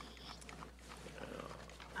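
Quiet room tone over a steady low hum, with faint, indistinct off-microphone voices.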